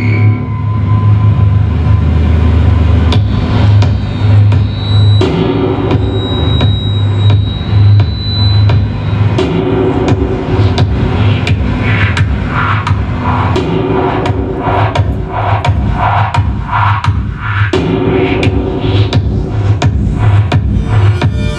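Live electronic music from synthesizers and a drum-pad sampler: a heavy, steady bass under sharp percussive hits about twice a second. The mid-range pattern shifts every four seconds or so, and a thin high tone is held for a few seconds in the first half.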